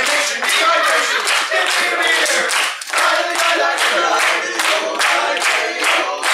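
Group of men singing a cappella in harmony over steady rhythmic hand-clapping, about two to three claps a second, with a brief break in the sound near the middle.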